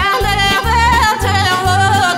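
Bulgarian folk-style song: a woman sings an ornamented melody with a wavering pitch over a band with a steady bass beat.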